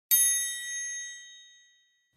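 A single bright chime, struck once and ringing with several high tones that fade out over about a second and a half: the page-turn signal of a read-aloud picture book.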